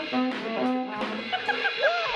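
A small live jazz band of trumpet and saxophone playing a short riff of separate notes, which gives way about a second in to a held note with a man laughing over it.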